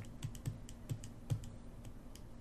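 Stylus pen tip tapping and scraping on a tablet screen while handwriting, a faint, quick, irregular run of light clicks.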